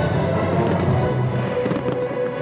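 Loud orchestral show music playing over a fireworks display, with sharp pops and crackles from bursting shells that come more often in the second half.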